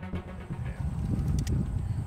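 Background music ends in the first half-second. After that there is an uneven low outdoor rumble with two or three sharp clicks about a second and a half in.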